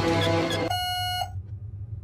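A held music chord ends, then an electric buzzer on a podium sounds twice, each buzz a flat steady tone about half a second long, about a second and a half apart. The two buzzes are taken as a "double yes" answer.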